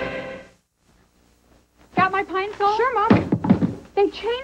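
The tail of a commercial jingle cuts off about half a second in, followed by a second or so of silence; then a woman speaks, with a few dull thuds about three seconds in.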